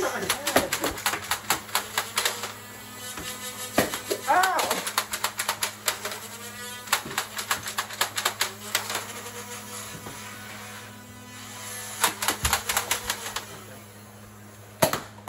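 A Nerf blaster fight: many sharp clicks and snaps in rapid irregular runs, several a second, from blasters firing and foam darts striking. A few short voice calls are mixed in, around four and six seconds in.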